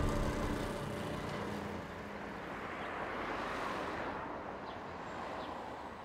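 Street traffic: a motor vehicle passing, its noise swelling about three to four seconds in and then fading, as the last notes of background music die away at the start.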